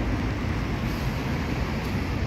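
Steady rumbling noise of a mountain bike rolling over paving, with wind buffeting the microphone.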